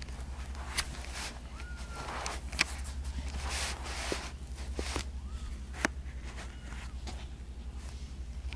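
Rustling and crinkling of disposable absorbent pads with a few sharp clicks, and several faint, short high mews from newborn kittens, each rising and falling in pitch. A steady low hum runs underneath.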